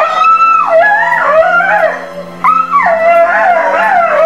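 A dog whining and howling in two long high-pitched cries that slide up and down in pitch, the excited greeting of a dog reunited with its owner. Background music with a steady low note runs underneath.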